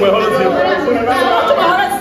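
Several voices talking over one another at once: loud group chatter.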